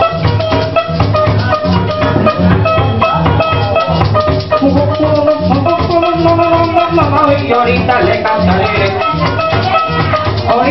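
Joropo tuyero music played live, an instrumental passage with no singing: a plucked-string melody over a steady pulsing bass and shaken maracas.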